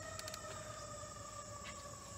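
A distant siren sounding a long, steady tone that slowly falls in pitch, faint, with insects chirping faintly.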